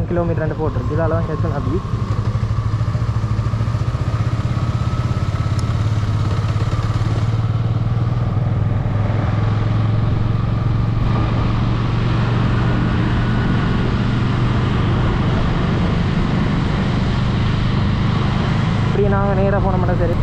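Motorcycle engine running steadily as the bike cruises along a road, a constant low engine note that holds throughout.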